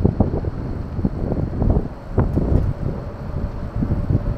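Wind buffeting the microphone in uneven gusts while riding an e-scooter, with a faint steady tone underneath.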